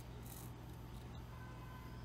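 Faint handling of a sewing thread and grosgrain ribbon, with a brief soft rustle about a quarter second in as the thread is drawn through, over a steady low room hum.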